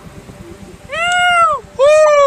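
Two long shouts from men, each rising and then falling in pitch; the second is louder and starts near the end.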